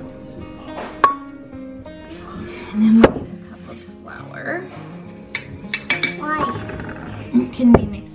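Soft background music, with a few sharp clinks of a fork and kitchen utensils against a glass mixing bowl, the loudest about three seconds in and another near the end.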